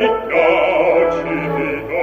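Operatic singing with orchestra from a 1955 live opera-house recording, the voices carrying a wide vibrato.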